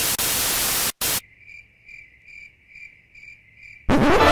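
A burst of loud TV static hiss for about a second, cut off abruptly, then quiet cricket chirps, evenly spaced at about two and a half a second: the stock crickets sound effect for an awkward silence.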